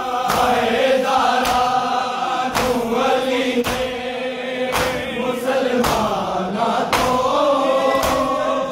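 A crowd of men chanting a noha, a mourning lament, in unison, while the crowd beats their chests (matam) in time, with a sharp collective slap about once a second.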